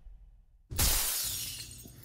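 Glass shattering: a sudden crash about two-thirds of a second in, with a bright spill that fades over the following second.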